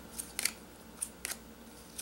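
Playing cards being drawn off the top of a deck by hand, about four light clicks and snaps of card stock against card.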